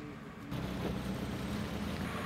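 A motor vehicle's engine running close by with outdoor noise. The sound steps up suddenly and gets louder about half a second in.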